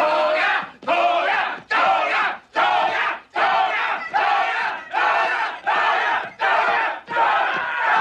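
A crowd chanting "Toga! Toga!" in unison, a shout a little faster than once a second, about ten times.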